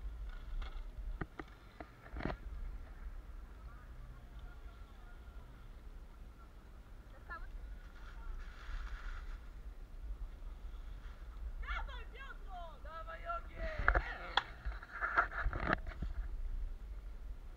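Mountain bike ridden over a dirt forest trail, heard from the rider's camera: a steady low rumble with a few sharp knocks in the first couple of seconds. Voices call out in the last few seconds.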